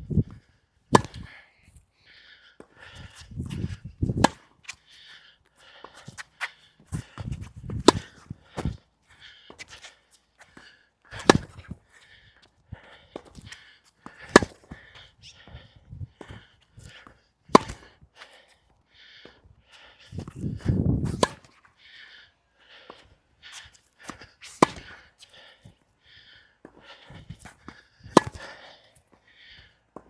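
A long tennis rally: sharp racket-on-ball strikes every few seconds, the near racket strung with Tourna Big Hitter Silver 7 Tour seven-sided polyester string at 50 pounds, with fainter ball bounces and strikes between and a few low rumbles.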